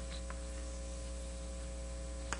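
Steady low electrical mains hum, with a couple of faint clicks early on.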